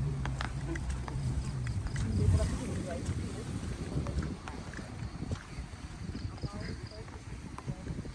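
A vehicle engine idling with a steady low hum that stops about two and a half seconds in, under the low, scattered chatter of onlookers.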